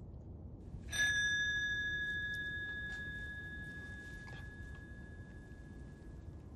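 A single bell-like ding about a second in, ringing on one clear pitch and fading away slowly over several seconds.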